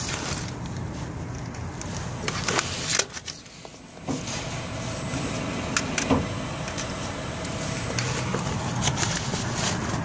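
Automated library return machine running: its conveyor motor hums steadily under a few sharp clicks as a returned CD is drawn in. The noise drops away for about a second, three seconds in.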